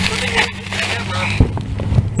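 A steady low mechanical hum, with one dull thump about one and a half seconds in.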